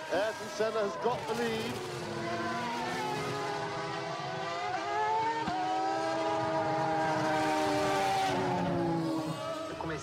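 Formula One car engines at high revs, a sustained note whose pitch drifts slowly up and down for several seconds.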